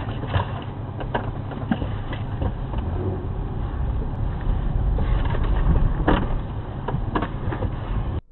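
A car's engine running, heard inside the cabin through a dash cam, with scattered clicks and knocks as a man gets into the driver's seat. The engine grows louder for a while past the middle.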